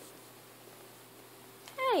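Quiet room tone, then near the end a newborn baby's short cry that falls in pitch as he stirs from sleep.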